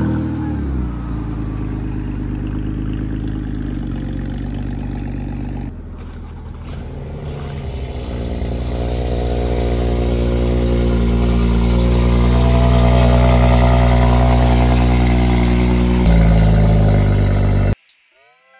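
BMW E46 coupe engine starting with a short rising flare, then idling steadily. After about six seconds a second BMW, the 5-series (540) saloon, is heard idling; its exhaust note swells over a few seconds and holds steady, then cuts off abruptly near the end.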